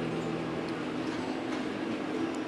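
Background film score of sustained low synthesizer chords with no clear beat, the held notes shifting to new pitches now and then.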